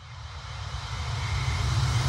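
A rushing noise over a deep rumble, fading in from silence and growing steadily louder: a rising swell, the kind of build-up effect that opens a soundtrack.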